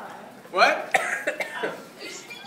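People's excited voices and laughter, with one loud, short vocal outburst rising in pitch about half a second in.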